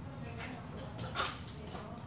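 Pit bull giving one short excited yelp about a second in, with a smaller sound from it earlier, over a low steady hum.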